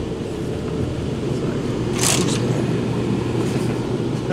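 Steady low hum and rumble of a parked tour bus's running machinery, heard inside the bus, with a brief hiss about two seconds in.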